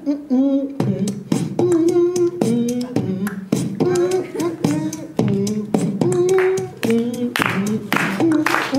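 Vocal beatbox through a handheld microphone: sharp mouth-made drum hits and clicks with a wordless sung melody between them, the melody stepping from note to note roughly twice a second.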